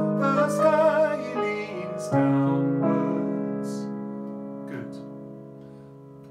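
A man sings a short melody phrase over piano chords played on a Nord Stage 3 stage keyboard. About two seconds in a final chord is struck and left to ring, fading steadily away.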